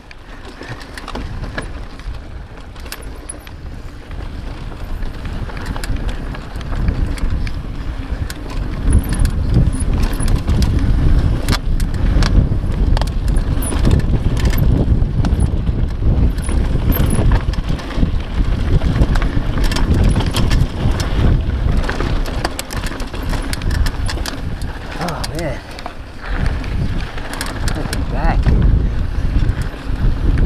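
Mountain bike riding down a dirt singletrack: wind rumbling on the handlebar camera's microphone and tyre noise, growing louder over the first several seconds as the bike picks up speed. Frequent sharp clicks and rattles come from the bike's chain and frame over the rough trail.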